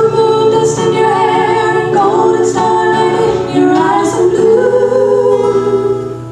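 Two women singing long held notes in close harmony, with acoustic guitars underneath, in a live performance of a soft pop ballad.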